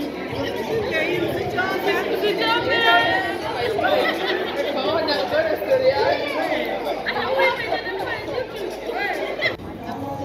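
Many people talking over one another: dinner-guest chatter echoing in a large hall.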